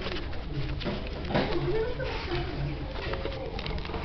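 A stack of paper cards being handled and flipped on a table, giving short clicks and rustles, over low, wavering vocal sounds that keep recurring.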